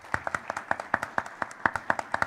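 Light applause from a small audience: a few people clapping, with the individual hand claps heard separately, several a second.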